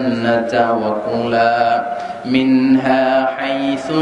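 A man chanting Quranic Arabic in a melodic, drawn-out recitation, holding long notes, amplified through a microphone. The passage leads into the verse about Adam and Hawa and the forbidden tree.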